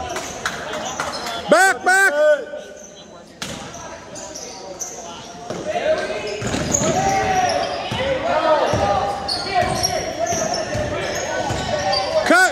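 A basketball being dribbled on a hardwood gym floor, with sneakers squeaking sharply a couple of times about two seconds in and again through the second half. Indistinct voices of players and onlookers echo in the large gym.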